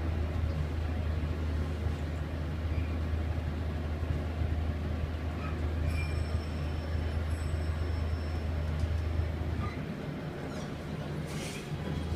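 Ride noise inside a 1989 Montgomery gearless traction elevator car travelling up one floor: a steady low hum that drops away about ten seconds in as the car stops. Near the end comes a short burst of noise as the car doors open.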